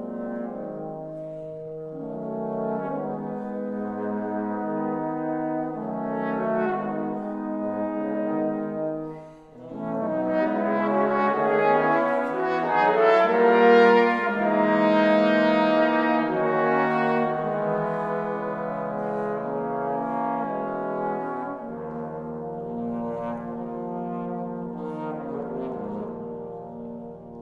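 A trombone quartet playing held chords. There is a short break about nine seconds in, then a louder passage, and the playing grows softer near the end over very low notes in the bottom voice.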